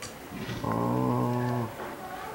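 A low, steady hum from a person's voice, held at one pitch for about a second.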